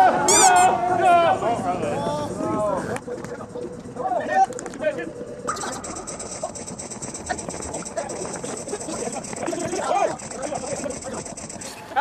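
Players' voices shouting and calling during a futsal game, loudest in the first second or so. From about halfway through, a steady high-pitched whine runs under the fainter voices.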